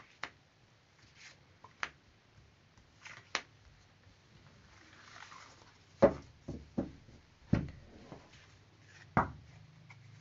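Tarot cards being swept up and slid together across a tabletop, with light clicks as they are gathered and a handful of louder knocks from about six to nine seconds in as the deck is handled against the table.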